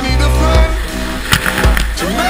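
Background music with a heavy, sustained bass line and a few sharp drum hits.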